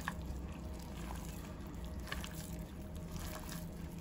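A gloved hand kneading raw pork mince mixed with potato starch and seasonings in a glass bowl: soft, wet, irregular squelching over a steady low hum.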